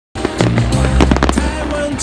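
Aerial fireworks bursting, with several sharp bangs and crackles in the first second and a half, over loud music with a steady bass line.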